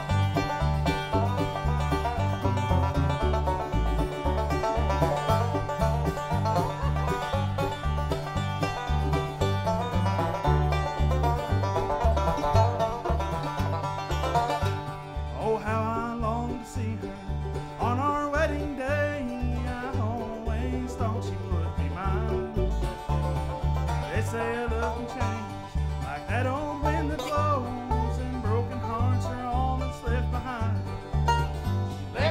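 Bluegrass band playing a song's instrumental opening: picked five-string banjo, strummed acoustic guitar and mandolin over a steady plucked upright-bass pulse.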